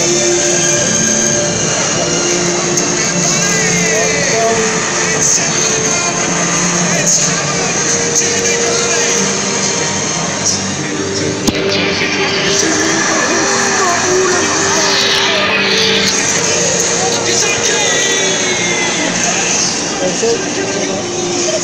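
Loud football stadium crowd: a dense wash of many voices, with a slow melody of long held notes running through it. A single sharp knock about halfway through.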